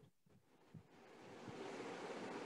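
Near silence, then about a second in a faint steady hiss fades up, the background noise of an open microphone on a video call.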